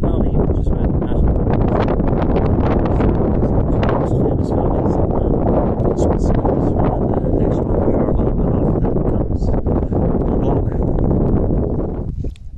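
Wind buffeting a phone's microphone on an exposed mountain ridge: a loud, steady low rumble of wind noise with scattered small clicks.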